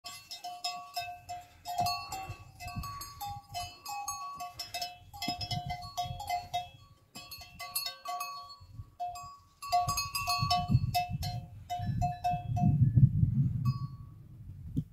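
Animal neck bells jangling irregularly, many short ringing strikes at a few fixed pitches, as a herd of grazing horses moves. A low rumble joins in over the last few seconds.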